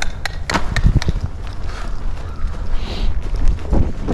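Hoofbeats of horses moving on soft arena dirt: a run of short, uneven knocks over a low rumble on the microphone.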